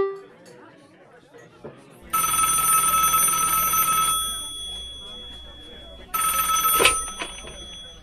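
Electronic ringing tone in two bursts of about two seconds each, the second cut short with a click.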